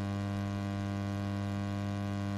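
Steady electrical mains hum: a constant low drone with a buzzy stack of even overtones.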